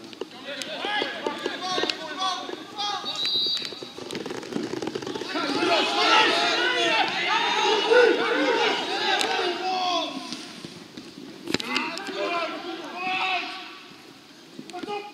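Several men's voices calling and talking over one another at a football match, loudest and most crowded in the middle. There is one sharp knock near the end.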